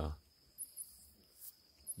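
Crickets calling at night: a faint, steady, high-pitched trill with a few short, higher chirps.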